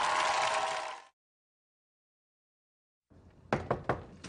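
Music fading out about a second in, then silence, then a quick run of knocks on a door near the end.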